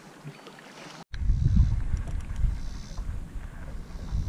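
Faint open-air hiss for about a second, then, after a brief cut-out, wind buffeting the microphone in a low, gusting rumble, with a few faint clicks.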